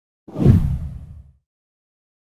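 Whoosh transition sound effect with a deep boom, starting about a quarter second in and dying away within about a second.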